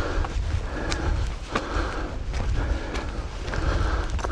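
Footsteps crunching on a gravel path at a steady walking pace, about six steps, over a low rumble of wind or handling on the microphone.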